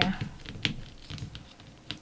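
A few light clicks and soft rubbing of hands rolling a thin rope of epoxy putty on a plastic-covered tabletop.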